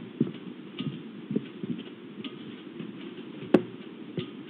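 Irregular soft knocks and scuffles of movement inside a camera-fitted nest box, with one sharp click about three and a half seconds in.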